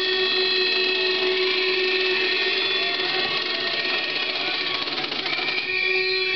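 Several horns sounding together as the crowd responds, a chord of steady tones held for several seconds over crowd noise.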